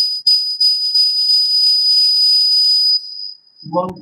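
A high-pitched whistle with a hiss: one short puff, then held steadily for nearly three seconds before dropping to a faint tone.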